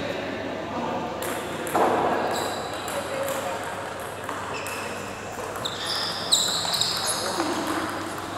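Scattered sharp clicks of a table tennis ball bouncing and being struck, the loudest about six seconds in, over faint background voices. A few short high squeaks are mixed in.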